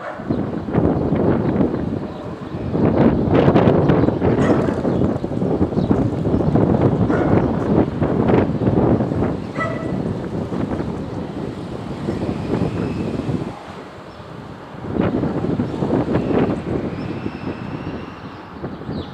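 Loud outdoor rushing noise that swells and fades in waves, dipping low for about a second shortly after the middle, with a faint short high tone around the middle.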